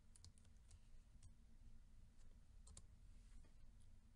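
Faint computer-keyboard keystrokes, a scattered handful of irregular clicks over a low steady hum.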